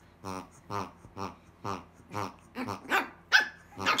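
A grunting latex pig toy squeezed again and again, giving a run of short oinking grunts, about two a second.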